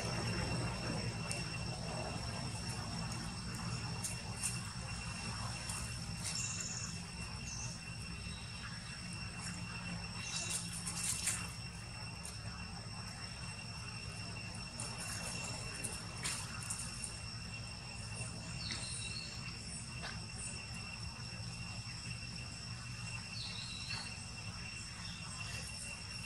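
Steady, high-pitched insect drone that runs on without a break, over a low background rumble. A few short high chirps and brief rustles break in now and then.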